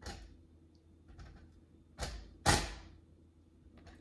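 Whole cucumbers being set down onto a pile on a kitchen scale: two sharp knocks about half a second apart, two seconds in, with a few faint knocks before them.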